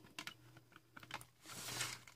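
Faint small clicks and taps of a plastic watercolor palette box and its snap-out mixing tray being handled, with a brief soft scrape near the end.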